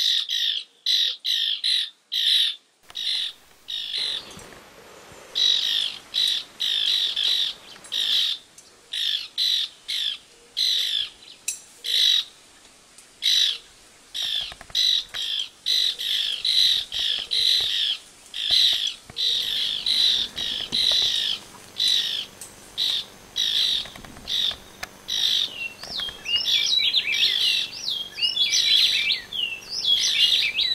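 A bird calling in short, harsh notes, repeated two or three times a second with a few brief pauses. Near the end, a second bird joins with quick sliding, whistled notes.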